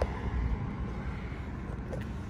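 Outdoor background noise: a steady low rumble with a light hiss, with no distinct event standing out.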